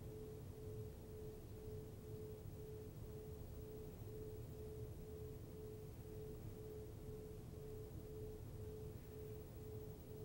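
Faint room tone with a steady mid-pitched hum over a low rumble.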